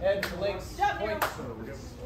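Indistinct voices talking, with two sharp knocks about a second apart.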